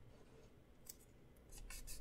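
Faint paper and washi-tape sounds as fingers press and smooth a strip of tape onto a paper planner insert: a small click about a second in, then soft rubbing near the end.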